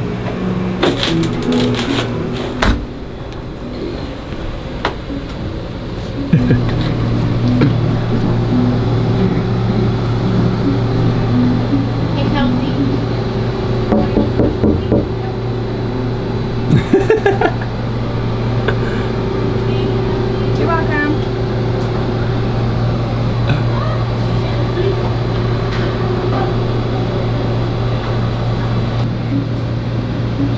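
A steady low hum, the electric cryotherapy chamber's refrigeration running, which grows louder about six seconds in. Music and muffled voices play over it.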